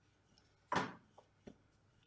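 Mostly quiet, with one short soft knock about three-quarters of a second in and two faint ticks after it, from hands and a wooden rolling pin working pastry on a wooden worktop.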